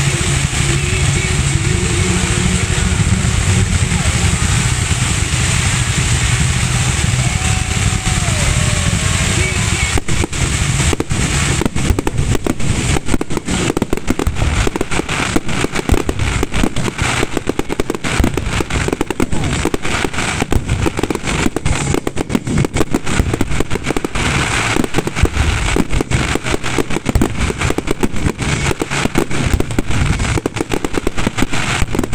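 Fireworks display: a steady low rumble of launches and bursts with a few wavering tones, then from about ten seconds in a dense, rapid crackling with sharp bangs that keeps going.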